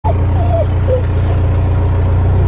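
A narrowboat's diesel engine running steadily, a deep even note with no change in speed.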